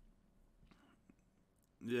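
Near silence with room tone and a faint, brief sound about a second in; a man's voice starts speaking near the end.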